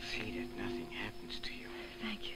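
Soft whispering over background music that holds sustained low notes.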